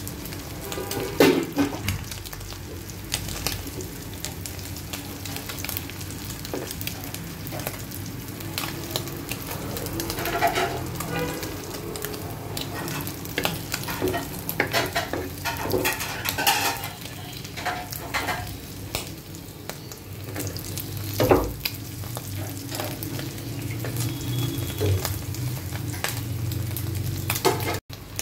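Small chapila fish (Indian river shad) frying in oil in a kadai: a steady sizzle, with a flat spatula repeatedly scraping and knocking against the pan as the fish are turned. The loudest knocks come about a second in and again about 21 seconds in.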